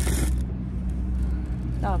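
Plastic grocery packaging rustles briefly as it is handled at the start, over a steady low hum.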